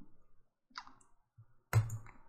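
A few quiet computer-mouse clicks as grid cells are selected, with a sharper, louder sound starting near the end.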